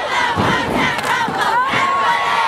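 A crowd of many voices shouting and cheering over one another at a youth football game, steady and loud with no single voice standing out.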